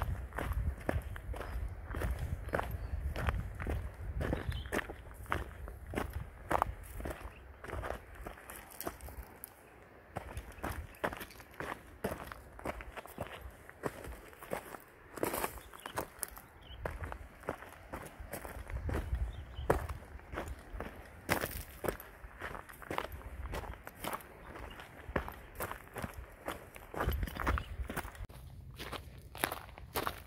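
Footsteps of a hiker on a loose-stone dirt trail through dry grass: irregular crunching steps at walking pace, with a low rumble that comes and goes.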